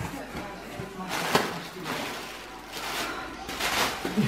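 Rustling and crinkling of cardboard and plastic packaging as a box is unpacked by hand, in a few short bursts.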